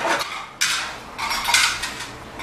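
Dishes clattering and clinking as they are washed and set into a plastic dish rack, with ceramic plates and steel bowls knocking together in two short bursts, the first about half a second in and the second about a second and a half in.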